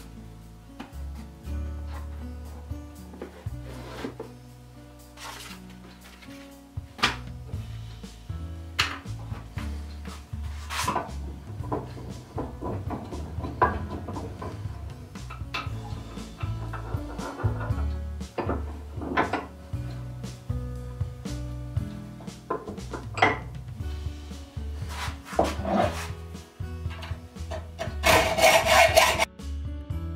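Background music over scattered knocks and handling sounds of a metal block being set in a bench vise. Near the end a hacksaw cuts the metal in a quick run of strokes.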